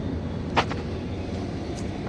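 Steady low rumble of a rooftop HVAC unit running, with one short click about half a second in.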